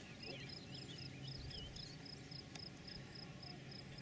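Faint outdoor ambience: an insect chirping in a steady, even, high-pitched pulse throughout, with a bird's short twittering calls in the first second and a half. A faint low hum runs underneath and stops about halfway through.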